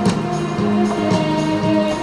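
Electronic keyboard playing an instrumental interlude: held chords that change every half second or so over a steady beat of about two strokes a second.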